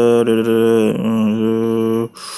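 A man's voice holding one long, low, steady note, a drawn-out chant-like hum, with a brief dip about a second in.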